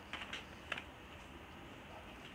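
A few light clicks and taps in the first second, from a paintbrush knocking against a palette while watercolour paint is picked up and mixed.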